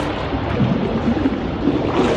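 Pool water splashing and churning around a water-filled AquaBLAST punching bag as it is pushed out on its short doubled tether and caught again.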